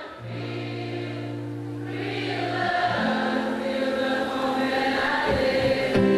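Live concert music: acoustic guitar and singing, with many voices singing together in held notes.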